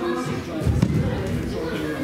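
A single dull thump a little under a second in, a judoka's body landing on the judo mats, over background chatter echoing in a large sports hall.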